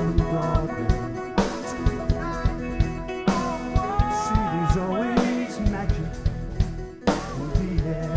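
Live rock band playing a full-band passage: drum kit keeping a steady beat with a cymbal crash about every two seconds, under bass, guitar and sustained keyboard chords.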